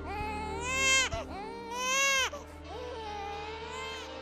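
A baby crying: two long, loud wails about a second apart, then a fainter, drawn-out cry.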